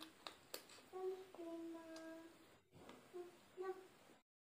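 A woman humming short, held notes with her mouth closed while chewing food, with a couple of sharp mouth clicks from eating about half a second in.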